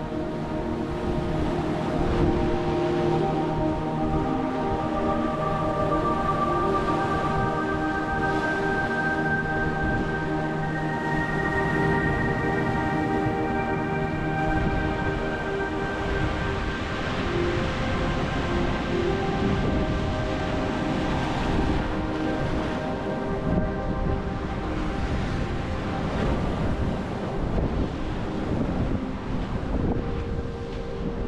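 Slow background music of long held notes over wind buffeting the microphone and surf breaking on the rocks.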